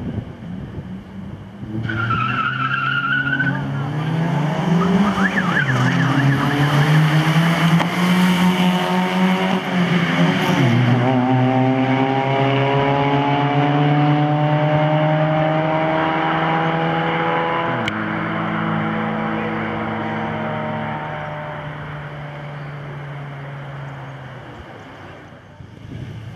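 Two compact cars launching from a standing start in a drag race. The tyres squeal briefly at the launch, then the engines rev hard and climb in pitch, dropping back at each gear change. The sound fades as the cars pull away.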